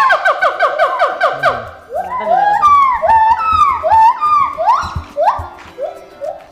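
Gibbons and siamang singing back and forth in loud whooping calls. A fast run of short rising whoops gives way, about two seconds in, to slower, longer hoots that swoop up and fall away, roughly two a second.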